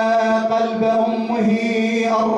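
A man chanting a Shia mourning elegy (a Husayni lament) in Arabic into a microphone, drawing out one long, slightly wavering note that shifts in pitch about one and a half seconds in.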